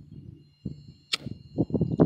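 A single sharp click of a handheld Scripto lighter being struck about a second in, followed by loud rough rushing noise near the end, likely wind on the microphone.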